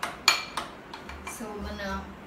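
A spoon clinking against a glass bowl while stirring chocolate batter: a few sharp clinks in the first second, the loudest about a quarter second in.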